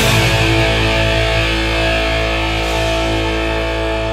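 Heavy metal band holding a sustained chord, with distorted electric guitar and bass ringing out with no drums and slowly fading.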